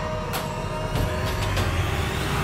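Dramatic background score: a low rumbling drone under a held tone, with several short percussive hits.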